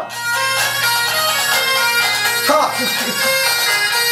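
Breton bagad pipe band playing: bagpipes sounding a melody over a steady drone. A man's short exclamation, "Ah", comes in over it about two and a half seconds in.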